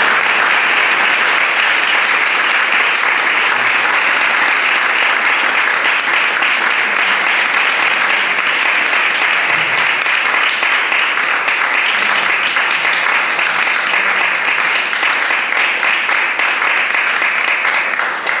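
A seated audience applauding steadily, the clapping thinning out at the very end.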